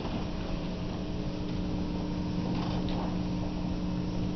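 Steady electrical hum from a public-address sound system: two held low tones that come on at the start, over the general room noise of a large hall.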